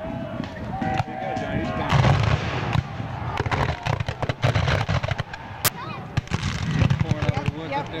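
Black-powder musket fire from reenactor infantry lines: a rapid ragged crackle of many shots, growing into a denser low rumble of volleys about two seconds in, with heavier booms among them.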